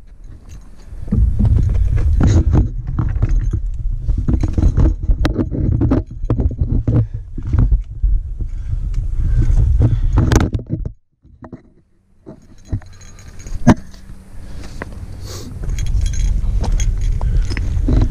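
Rumble of wind and handling on an action camera's microphone, with many scrapes and clicks as a climber grips rock and branches during a scramble. The rumble drops almost to silence for about a second and a half midway, then returns.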